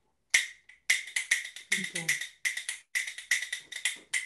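A pair of rhythm bones cut from cattle shin bones, held in one hand and clacked together in a fast rhythm: a quick run of sharp clicks, some in tight triplets.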